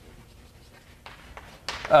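Faint scratching and tapping of writing on a lecture board, with a man's voice starting again near the end.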